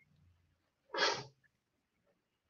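A single short burst of breath and voice from a person, about a second in, like a brief sneeze or snort.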